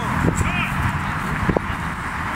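Football training on grass: players' short shouts and calls over the pitch's background noise, with sharp thuds of a football being kicked, one about a second and a half in.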